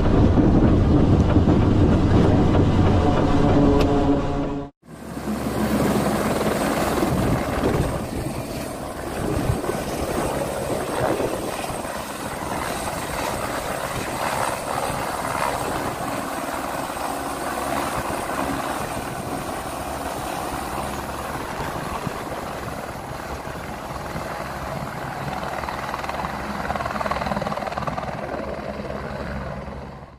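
A light helicopter hovering low over water, its rotor and turbine running steadily while it fills an underslung water bucket. This is preceded by a few seconds of a twin-turboprop aircraft's steady engine drone on a carrier landing approach, which cuts off abruptly.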